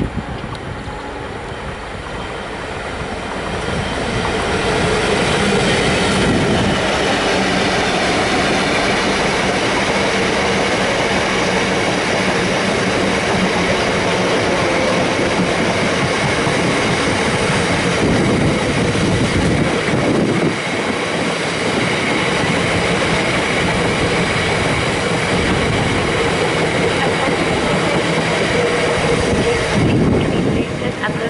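Double-headed GBRf Class 66 diesel freight train passing close by with loaded bogie sand hopper wagons. It grows louder over the first few seconds, then the long rake of hoppers keeps up a steady heavy rumble and clatter of wheels on the rails.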